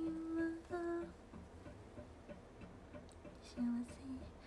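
A woman singing a song phrase: she holds a steady note for about the first second, then a short, lower note comes near the end.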